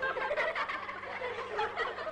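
An audience laughing and chattering, many voices at once, over a steady low hum.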